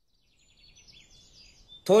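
Faint high-pitched bird chirps, starting about half a second in after near silence. A man's voice begins just before the end.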